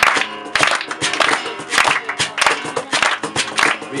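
Acoustic guitar strummed in a steady rhythm with a hand drum beating along, an instrumental stretch between sung lines of a campfire-style song.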